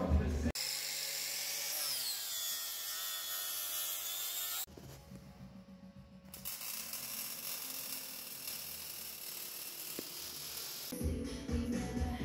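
Background music at the start, breaking off for a power tool running with a high hiss and a whine that falls in pitch. It drops away for a moment, runs again, and the music returns near the end.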